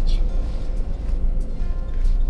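Steady low road rumble inside a moving car's cabin, with music playing along.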